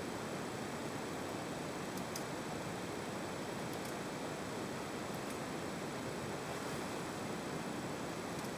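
Steady background hiss, with a few faint light clicks and scrapes from a small knife paring a vegetable held in the hand.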